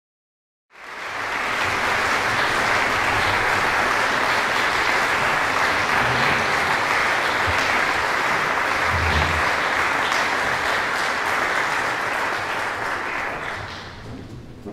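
Audience applauding in a concert hall, dense and even, coming in within the first second and dying away near the end.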